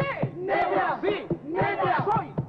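A chorus of women's voices shouting a Spanish poem in unison, "¡Negra! ¡Sí!" and "Negra soy", answering a lead voice in call and response.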